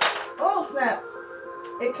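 A sharp metallic clink right at the start, as a screw is worked loose from the underside of a sofa with a hex key, over background music.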